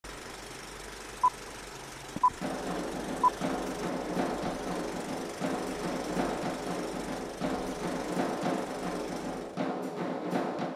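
Three short electronic beeps a second apart over a faint steady hum, then a jazz band starts playing about two and a half seconds in, with drums keeping a steady beat.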